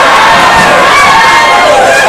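Ringside crowd of boxing spectators shouting and cheering, many voices overlapping at a loud, steady level.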